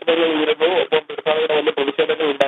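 Speech only: a voice talking without pause in Malayalam, thin and cut off at the top as if heard over a phone line.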